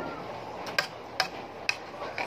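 A spoon clicking against a dish three times, about half a second apart, over a steady background hiss.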